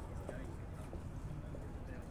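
Street ambience: indistinct voices of passers-by and the clip of footsteps on paving over a steady low rumble.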